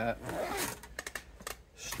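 Zipper on a padded soft guitar case being pulled shut with a short rasp. This is followed by a quick run of light clicks and rustles as the case's padded inner flap is handled.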